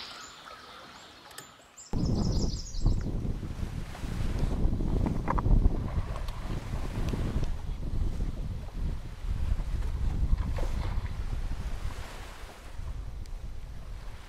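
Wind buffeting the microphone, a low, gusty rumble that starts suddenly about two seconds in and keeps rising and falling.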